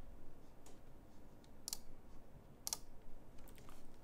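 A few faint, separate clicks at a computer, about a second apart, over quiet room tone.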